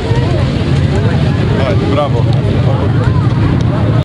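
A car engine running steadily as the car moves off, a constant low hum under the voices of people talking close by.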